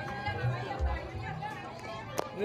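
Several people chattering as a group walks along, with music playing faintly in the background.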